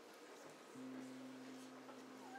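A faint, single low note enters less than a second in and holds steady without fading: the first sustained note of the song's intro from the band's instruments.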